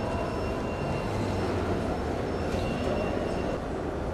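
Steady ambient noise of a large exhibition hall: a constant low rumble and hiss with no distinct events, and faint thin high tones coming and going.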